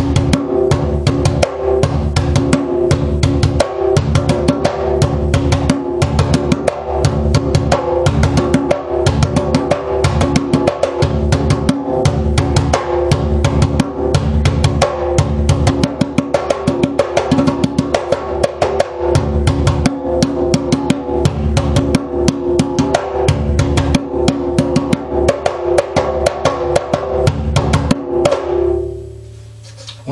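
Djembe played with bare hands in a fast, steady accompaniment rhythm, its skin head not pulled very tight, giving the fuller, overtone-rich tone wanted from an accompaniment drum. The playing stops about two seconds before the end and the drum rings out briefly.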